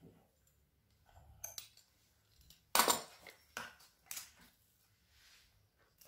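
Metal kitchen utensils clinking and knocking on a wooden board: a pastry wheel put down and a metal spoon of soft cheese taken up. There are a few sharp clacks, the loudest about three seconds in.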